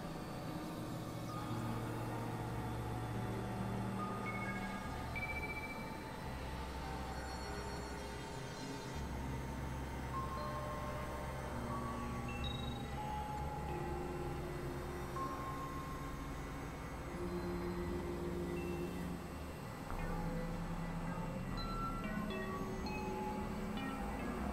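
Experimental electronic synthesizer music: short held tones pop up at scattered, unrelated pitches over low drone notes that shift every second or two, with no beat.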